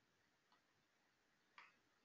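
Near silence, with one faint click about one and a half seconds in.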